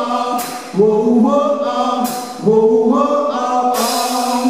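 Live rock band with electric guitars, drums and several voices holding sung notes in harmony, without words. A cymbal crashes three times, about every second and a half.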